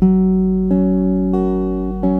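Acoustic guitar fingerpicked in a bass-then-treble pattern: a low bass note at the start, then higher strings plucked about two thirds of a second apart, twice, letting the notes ring together.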